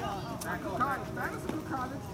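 Several indistinct voices calling out and shouting over each other, with a couple of sharp taps, one about half a second in and one about a second and a half in.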